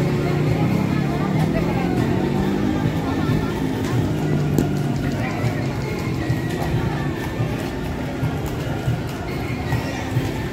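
Hooves of a carriage horse clip-clopping on the street pavement, set in a steady bed of crowd chatter and music.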